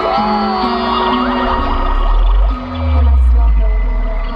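Live music from a festival stage, heard from the crowd through the PA. It carries held notes and a sliding melody line, and deep bass swells in about two and a half seconds in.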